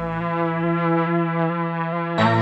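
GAS, a Kontakt synth instrument built from electric-guitar samples, sounding one held note with a brassy tone. A deep bass layer under it fades out within the first second.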